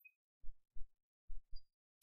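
Four faint, short, low thumps in two pairs, each pair a third of a second apart and the pairs about a second apart, over a quiet background.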